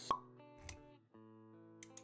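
Background music with soft sustained notes, topped by a short, sharp pop sound effect just after the start and a brief low thump a little past halfway, part of an animated logo intro.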